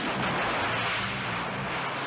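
Film explosion effect: a loud, sustained rushing blast as a vehicle is blown into water and throws up spray, with low music notes beneath.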